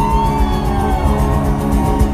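Live acoustic guitar strumming, with one long held note that bends gently above it.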